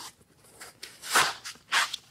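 Foam packing rubbing and scraping as it is pulled out of a cardboard box, in a few short noisy bursts, the strongest about a second in.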